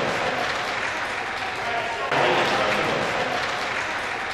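Spectators applauding, with voices mixed in.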